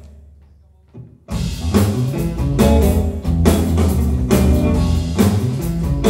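Live band of hollow-body electric guitar, electric bass and drum kit: the music breaks off at the start, leaving only a fading low hum for about a second, then the whole band comes back in together and plays on loudly.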